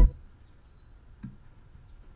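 A hip-hop beat playing back from the DAW cuts off at the very start. What follows is faint room noise with two soft computer-mouse clicks, one a little past the middle and one near the end.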